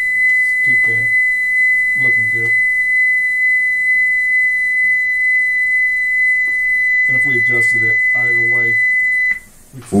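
A steady 2 kHz test tone played back from a Magnetic Reference Laboratory calibration tape on a Sony TC-765 reel-to-reel deck, used to check the playback head's alignment. It holds at one pitch and cuts off about nine seconds in.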